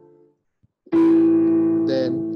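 Roland digital piano: a held chord is released just after the start, a brief silence follows, then a new chord is struck about a second in and left to ring, slowly fading.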